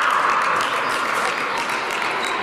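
Spectators clapping and cheering for a touch just scored in a fencing bout.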